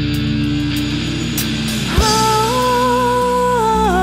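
Live band music with electric bass; about two seconds in a low hit lands and a woman's voice comes in, holding a long sung note.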